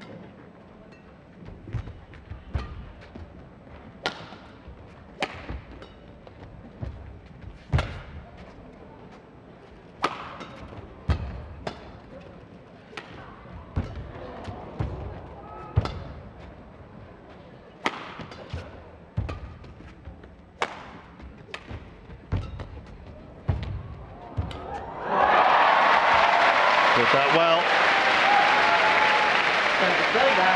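Badminton rally: sharp racket strikes on the shuttlecock about once a second, with players' footfalls on the court. About 25 s in, the rally ends and a large crowd breaks into loud cheering and applause for the point won.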